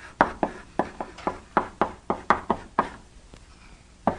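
Chalk tapping and knocking against a blackboard as an equation is written: about a dozen sharp taps in quick, uneven succession, stopping about three seconds in.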